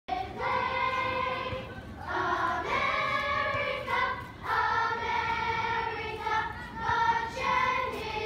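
Children's choir of boys and girls singing, held notes in phrases of a second or two with short breaks between them.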